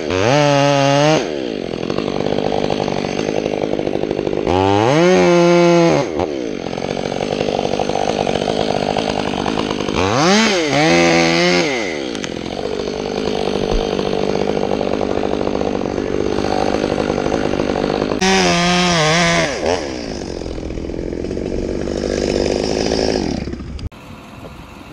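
Stihl two-stroke chainsaw cutting through a tree trunk. It runs steadily under load and revs up sharply four times, the pitch rising and falling each time. It drops away near the end.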